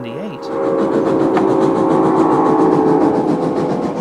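Steam locomotive whistle blowing one long blast of several tones at once, starting about half a second in and fading near the end, over the noise of the moving train.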